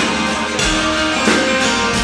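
Live band music with no singing: a strummed twelve-string acoustic-electric guitar over a drum kit, with cymbal strokes keeping the beat.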